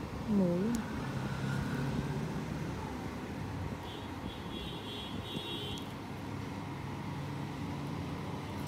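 A steady low background rumble, with a short wavering vocal sound about half a second in and a faint high warbling chirp in the middle.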